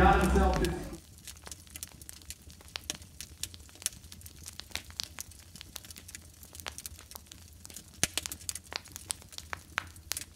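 A voice and music fade out in the first second, then a wood fire crackles faintly with irregular snaps and pops, a few louder pops coming near the end.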